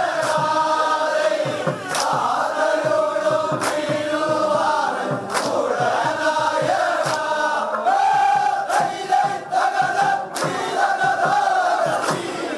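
A large group of men singing vanchipattu, the Kerala boat song, together in loud unison, with a sharp beat about every second and a half keeping the rhythm.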